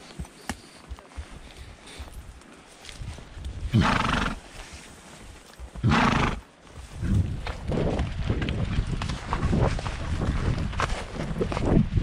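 A horse ridden at a walk on a rough trail blows out twice, two loud breathy half-second blasts about two seconds apart. After that come its hoof steps and rustling through the undergrowth.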